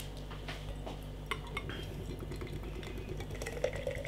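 Faint scattered clinks and light taps of a beer can and glass being handled, ready for pouring.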